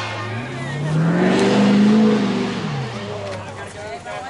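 A motor vehicle engine revving up and then easing back down, its pitch rising to a peak about two seconds in and falling again by about three seconds.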